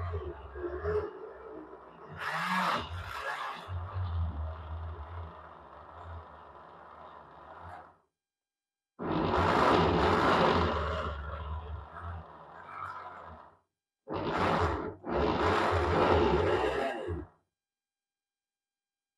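Countertop blender motor running while puréeing a thick green herb and spice mixture. It stops and starts abruptly several times, in four stretches of a few seconds each.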